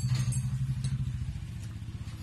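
A motor idling: a steady low hum with a fast, even throb.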